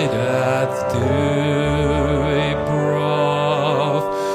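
A harmonium over a hundred years old, a foot-pumped reed organ, playing sustained chords that change about a second in, with a man singing over it with vibrato.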